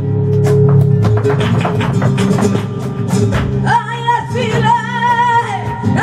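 Live flamenco music: guitar with sharp percussive strikes throughout. About halfway through, a singer comes in with a long, wavering, ornamented vocal line.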